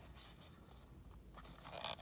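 Faint scraping and small clicks of fingers working at a plastic toy starfighter's cockpit canopy to pry it open, with a slightly louder scratchy stretch near the end.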